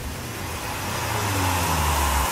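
Motorcycle engine running hard as a dirt bike rides up: a dense, noisy rush with a low drone underneath, growing slightly louder.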